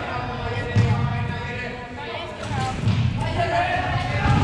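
Floorball game sounds echoing in a large sports hall: players' voices calling out over the court, with several dull thuds from the play on the floor and boards.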